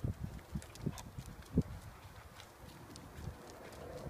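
A Labrador's paws landing as it jumps down off a wooden bench onto concrete: a few soft thumps in the first two seconds, with light claw clicks.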